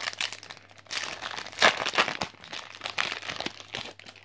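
Foil wrapper of a Yu-Gi-Oh! booster pack crinkling as it is handled and opened, in a run of sharp crackles that is loudest about a second and a half in.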